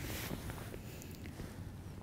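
Faint handling noise from a camera and the flash trigger on top of it: a short rustle, then a few soft clicks.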